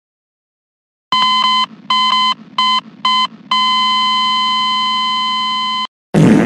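Electronic beep tone at one fixed pitch, after about a second of silence: four beeps of unequal length, two longer and two short, then one long held beep that cuts off suddenly near the end.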